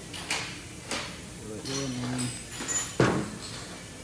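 Knocks and a clunk from engine intake parts being handled and set down on a shop floor. The loudest is a single sharp knock about three seconds in.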